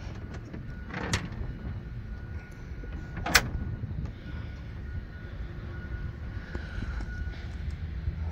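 Low rumbling background noise with two short, sharp knocks: a light one about a second in and a louder one about three and a half seconds in.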